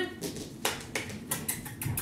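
A series of about seven light, sharp taps and clicks, irregularly spaced.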